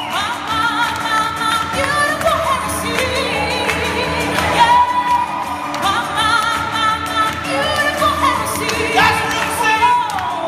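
Live pop song performance: a group of singers, men and women, singing together over band accompaniment.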